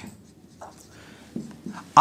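Marker pen writing on a whiteboard: a few short, faint strokes as numbers and a line are written.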